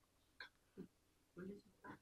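Near silence in a pause in a man's speech, broken by a few faint, short mouth sounds.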